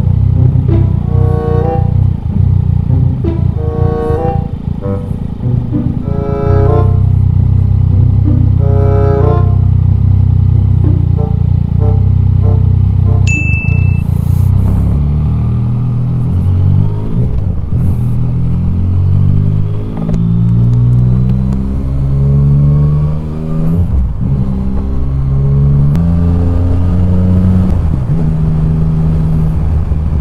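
Background music playing over the steady running of a Yamaha Tracer 900 GT's three-cylinder engine while riding.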